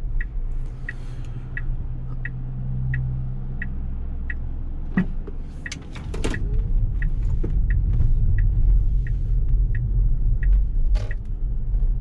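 Turn-signal indicator of a 2015 Tesla Model S ticking steadily inside the cabin, about one and a half ticks a second, over low road rumble. The rumble grows louder about six seconds in as the car pulls away from the junction.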